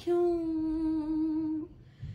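A woman's voice holding one long, steady note of an unaccompanied Sindhi song for about a second and a half, then falling away.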